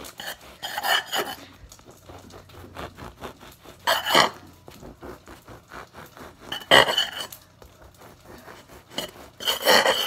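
A large knife sawing slices off a loaf of bread: a rasping back-and-forth, with four louder strokes about three seconds apart.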